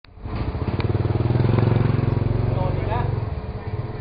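A vehicle engine running close by, a low pulsing rumble that swells over the first second and a half, then fades away, like a vehicle passing.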